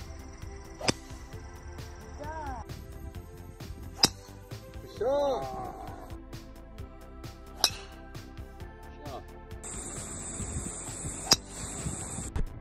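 Four sharp strikes of a golf club hitting the ball, each a short crack, about three and a half seconds apart, over steady background music.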